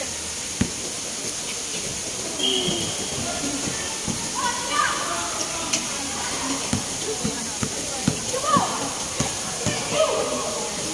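Pickup basketball game on an outdoor hard court: a basketball bouncing in short dull thuds at uneven intervals, more often in the second half, with players calling out over a steady background hiss.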